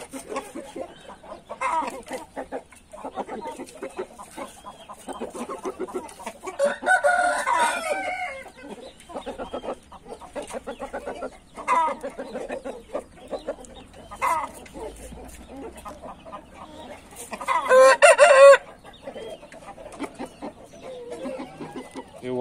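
Índio game rooster crowing twice with a short crow: about seven seconds in, and again louder near the end. Short clucking calls come in between.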